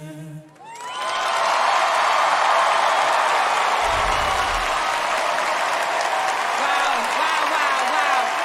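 A studio audience breaks into loud applause and cheering about a second in, as the group's final held a cappella chord cuts off. A brief low rumble sounds about four seconds in.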